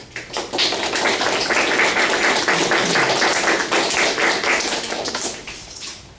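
A group of people applauding, many hands clapping densely, fading away near the end.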